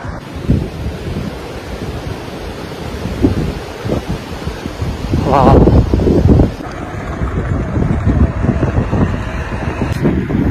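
Wind buffeting the microphone of a camera carried on a moving bicycle: a rough, gusting rumble that swells loudest around the middle and then eases.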